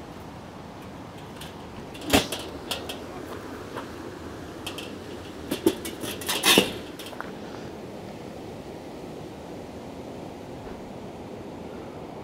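Sheet-metal sections of a Napoleon vertical charcoal smoker being set back onto its charcoal base and fitted together, closing it up over freshly added wood chips. There is one sharp metal clank about two seconds in, then a few lighter knocks and a short cluster of clanks around six and a half seconds.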